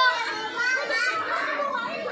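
A crowd of young children playing in a pool, their high voices shouting and chattering over one another.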